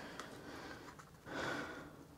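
A man's quiet breath out, a soft half-second exhale about one and a half seconds in, over a few faint handling ticks near the start.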